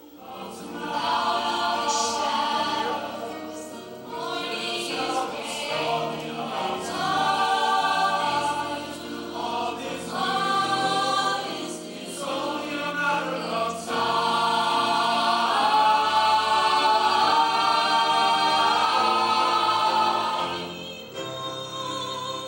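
A choir singing in a live stage performance, the sung notes louder and held through the second half, easing off just before the end.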